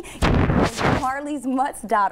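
A sudden loud rush of noise on the microphone, just under a second long, with no pitch to it, where a laugh is heard. Speech follows straight after.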